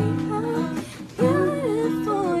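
Music: a voice singing a slow melody over acoustic guitar, with a short break about a second in.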